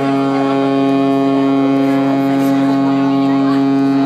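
A ship's horn sounding one long, steady blast, with a low, deep tone.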